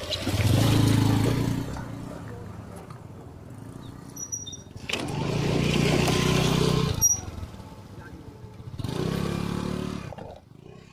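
Small two-wheeler engines, a motorcycle and a scooter, passing close by one after another on a rough track. Each swells up and fades away: one right at the start, a louder one about five seconds in, and another near the end.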